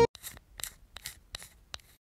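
A series of about six short, sharp clicks, a few tenths of a second apart, coming right after music cuts off.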